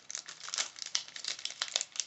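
Plastic snack bag of almonds crinkling as it is handled and turned over, a quick irregular run of crackles.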